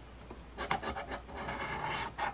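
A coin scraping the scratch-off coating from a lottery scratch ticket in quick repeated strokes, starting about half a second in.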